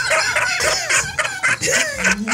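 Men laughing hard together, a fast cackling run of ha-ha syllables with a falling whoop near the end.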